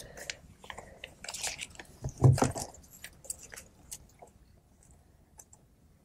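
Paper rustling and pages being handled close to a lectern microphone: scattered small crinkles and clicks, with one louder rustle about two seconds in, thinning out toward the end.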